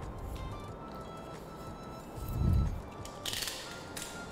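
Soft background music, with a dull thump about halfway through and a short scratchy rasp near the end as a craft knife cuts through a polystyrene foam egg.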